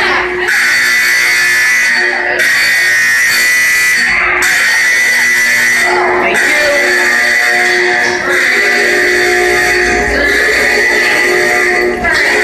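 Honeywell SC808A fire alarm horns sounding in alarm: a loud, steady, buzzing tone that dips briefly about every two seconds.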